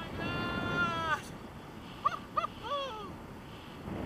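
A person whooping with excitement in flight: one long high-pitched 'woo' that drops in pitch at its end, then a few short hooting cries about two seconds in, over wind rushing on the microphone.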